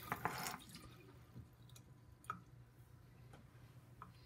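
A sink tap's last trickle dying away in the first half second, then a few faint, scattered drips of water, the clearest a little after two seconds.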